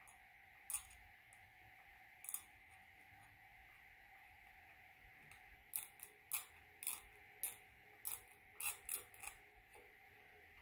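Faint short scraping clicks of a steel Gracey 15/16 After Five curette's blade stroking against plastic typodont teeth during scaling strokes: two isolated strokes early, then a quick run of about eight, roughly two a second, from about six seconds in. A faint steady hum lies underneath.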